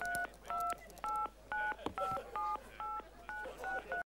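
Touch-tone telephone dialing: a run of about ten short two-tone keypad beeps, roughly two to three a second, as a number is dialed.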